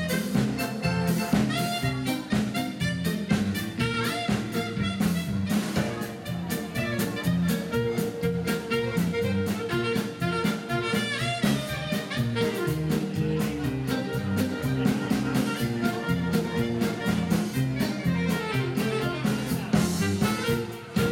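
A live liscio dance band playing an upbeat tune: a saxophone carries the melody over accordions, bass and a drum kit keeping a steady dance beat.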